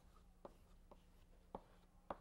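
Chalk knocking against a blackboard during writing: three short sharp taps about half a second apart, over a faint steady room hum.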